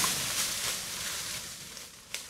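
Eurasian woodcock's wings whirring as the released bird flies off through the woods, the rushing sound loudest at first and fading away over about two seconds.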